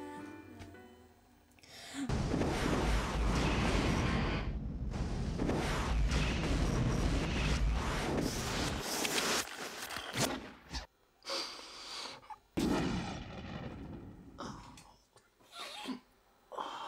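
Film sound-design noise: a loud rumbling roar with a deep low end starts about two seconds in and lasts some seven seconds, then breaks into short, choppy bursts of noise. Soft music fades out at the start.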